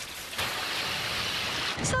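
Water spraying from a broken kitchen faucet, a steady rushing hiss that starts about half a second in and stops just before a woman starts speaking.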